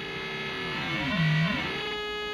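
Synthesizer sawtooth tone ring-modulated by a square wave in a four-quadrant multiplier module, which flips its polarity. It gives a steady buzzy pitch with extra sideband tones that swoop down and back up about the middle, as the square wave's frequency is turned.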